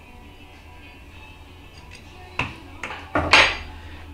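A few sharp metallic clinks and clicks in the second half, the loudest near the end: a threaded steel lamp rod being set down on a wooden workbench. A low steady hum runs underneath.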